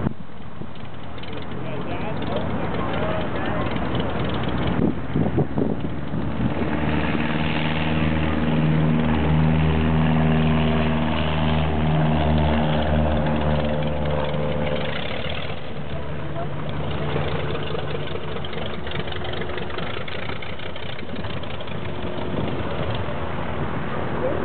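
Radial engine of a Fleet biplane running at low taxi power, a steady propeller drone. It grows louder for several seconds in the middle as the plane comes closest, then eases off.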